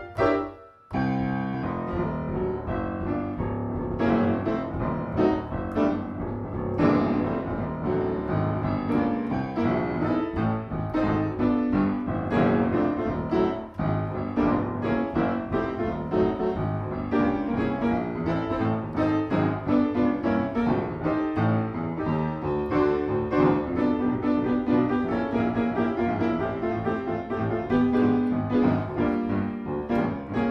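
Grand piano played solo, improvised, with dense chords and runs that go on without let-up apart from a brief break just under a second in.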